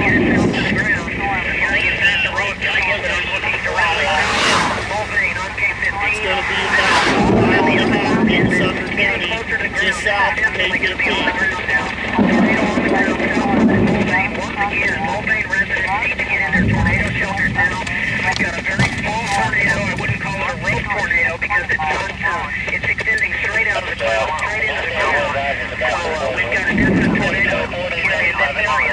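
Indistinct voices, with no clear words, run throughout, and low gusts of wind buffet the microphone several times.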